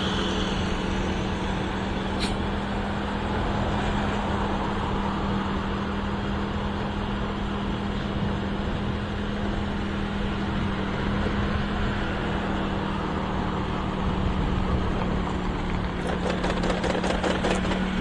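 Motorcycle cruising at steady speed: a steady engine hum under wind and road noise. A quick run of light ticks comes near the end.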